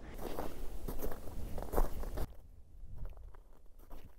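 Footsteps of hiking boots on a mountain trail: a noisier stretch of steps, then, after about two seconds, a sudden drop to quieter, softer steps in snow.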